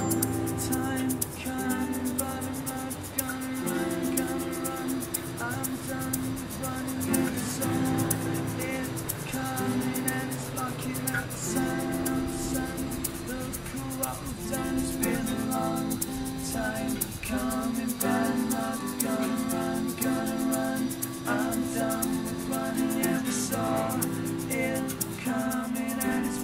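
Acoustic instrumental intro: two strummed acoustic guitars under long held harmonica chords, with short bright notes from a toy xylophone.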